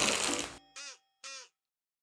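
A short loud rustling sound at the start, then dead silence broken by two short cawing calls, each falling in pitch, about half a second apart.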